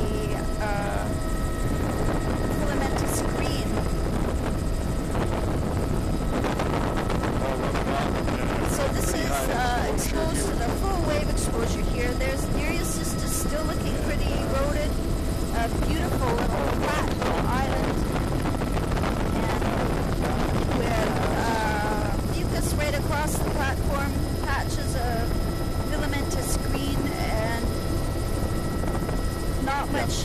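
Helicopter cabin noise: a steady drone of rotor and engine with no change in level, with a few faint steady high whines over it and voices here and there.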